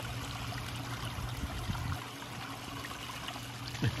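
Water from a small pump-fed garden waterfall running steadily over rocks and pebbles in a shallow stream bed, a gentle trickling and splashing.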